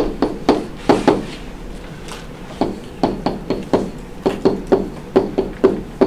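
A pen stylus tapping and knocking against a pen-input screen as an equation is handwritten: a run of short, sharp clicks in uneven clusters with brief pauses between them.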